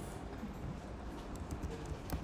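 Computer keyboard keystrokes: a few light, scattered taps as code is typed, over a steady low background hum.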